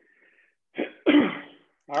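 A person clearing their throat about a second in: one short sound, then a longer one.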